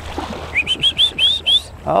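A bird calling: a quick run of about six short, rising, high notes lasting about a second, over low sloshing of water.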